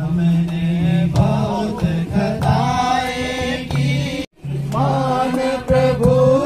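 A congregation singing a hymn together, with hand-clapping keeping time. The singing breaks off in a brief silent gap a little after four seconds in, then carries on.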